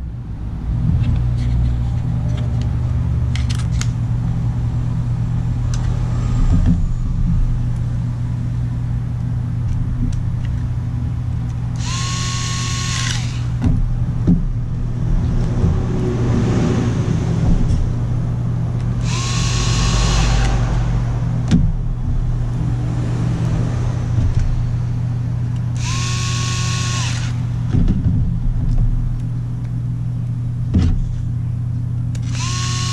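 Hitachi cordless electric screwdriver running in three short bursts of about a second and a half each, several seconds apart, each with a steady high motor whine. A steady low hum runs underneath.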